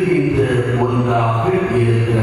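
A man's voice chanting a prayer in long, held notes that step slowly from pitch to pitch.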